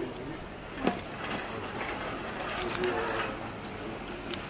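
A single sharp knock of a hard plastic detergent tub being handled, about a second in. Beneath it runs the hum of a large store with indistinct voices of other shoppers, swelling briefly near the end.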